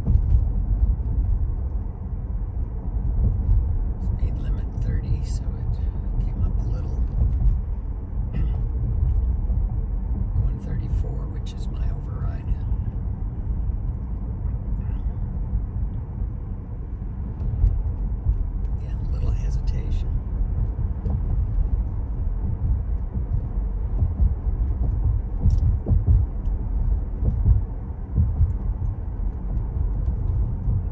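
Steady low road and tyre rumble heard inside a Tesla's cabin as it drives along a town street, with no engine note. A few short hissy bursts come and go over it.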